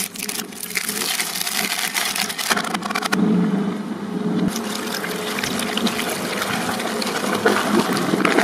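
Twin-shaft shredder running, its cutter blades crunching and crackling through plastic toys over the steady hum of its motor. The crunching thins out briefly a little past the middle, then picks up again densely.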